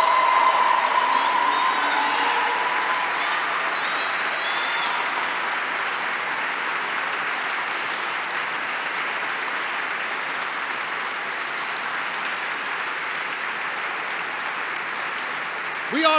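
Sustained applause from a large audience, slowly fading over the stretch.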